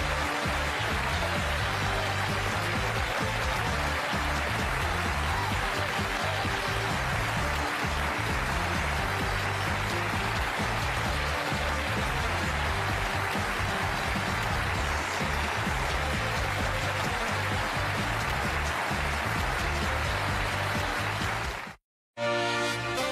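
Studio band playing closing music under steady audience applause; both cut off abruptly near the end.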